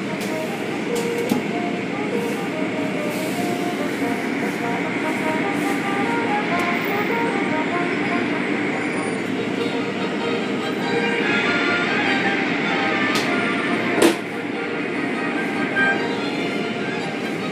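Automatic car wash running: cloth brushes and curtain strips rubbing and slapping against the car amid water spray and machinery, a steady wash of noise with scattered short squeaks. A single sharp knock about fourteen seconds in.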